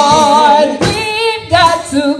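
A woman singing unaccompanied through a microphone, her held notes wavering in a wide vibrato. Two phrases come with a short break about halfway.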